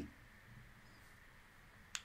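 Near silence: faint room tone, with one brief click just before the end.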